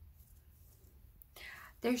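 Quiet room tone, then a short soft hissing noise about a second and a half in, leading straight into a woman's voice near the end.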